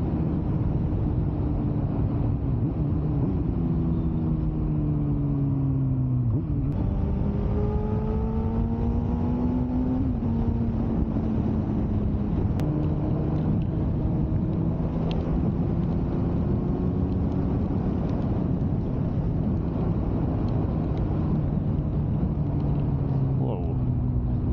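Suzuki GSX-R 600 K9 inline-four engine under way, over a steady rush of wind and road noise. Its pitch drops for a few seconds as the bike slows. From about seven seconds in it rises as the bike accelerates, then settles into a fairly steady cruise.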